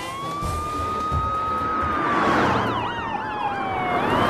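Police car sirens: a long wail that rises at the start, holds, then slowly falls, joined about halfway through by a faster warbling siren.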